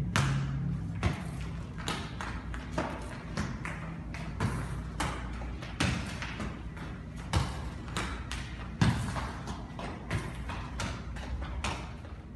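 A futsal ball passed back and forth between two players on a hard tiled floor: an irregular run of kicks, taps and bounces, several a second, with a few louder kicks.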